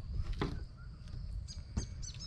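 Small birds chirping faintly in the background, with a few short high chirps near the end, over a low steady outdoor rumble. A couple of brief soft knocks come from knife work on the table.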